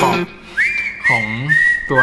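Whistling: a high whistled note slides up about half a second in and is held, then a slightly lower note is held near the end. A short voice-like sound comes between them.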